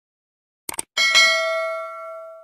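Two quick mouse-click sound effects, then about a second in a bright bell ding that rings on and slowly fades. This is the click-and-bell sound of a YouTube subscribe-button and notification-bell animation.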